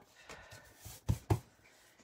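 Folded cardstock card being opened and handled on the work surface, a faint papery rustle with two light knocks about a second in.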